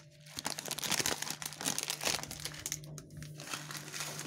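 Clear plastic bag crinkling and rustling as it is handled, an irregular run of crackles throughout.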